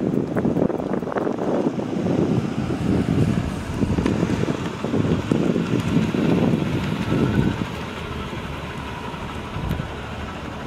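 Wind buffeting the microphone in choppy gusts over the low running sound of a car rolling slowly past, a 1988 Chevy Caprice with a 305 V8. The buffeting drops away about eight seconds in, leaving a quieter steady rumble.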